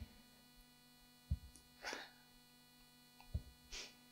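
A pause with steady electrical mains hum on the handheld microphone's sound system. Two short breaths into the microphone and two faint low bumps break it.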